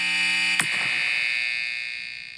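A sustained, alarm-like electronic tone made of many steady pitches. It swells in, holds, and fades away near the end, with a single click about half a second in.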